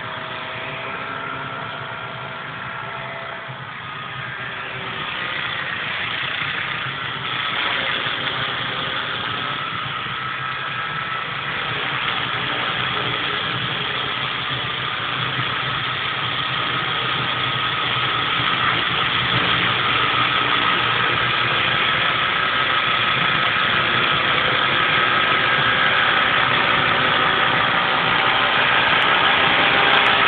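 Multiplex Funcopter radio-controlled model helicopter in flight: the steady whine of its motor and spinning rotor, its pitch wavering slightly, growing steadily louder as the helicopter comes in low and close.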